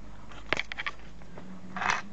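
Small copper parts from a circuit breaker clicking and clattering in a clear bowl on a kitchen scale, a quick cluster of light clicks about half a second in, then a short rustle near the end.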